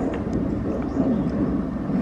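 Airplane flying high overhead, a steady low rumble.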